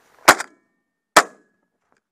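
Two shotgun shots just under a second apart, fired as a left-and-right at birds in flight.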